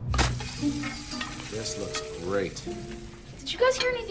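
Hot sausages sizzling on a serving platter: a steady frying hiss that starts suddenly and runs on through most of the moment.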